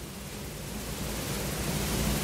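Steady hiss that grows slowly louder, the noise floor at the head of a pre-recorded voice-over clip being played.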